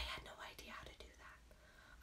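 Very quiet, breathy whispering and mouth sounds from a woman between sentences, with no voiced speech; a short sound right at the start is the loudest part.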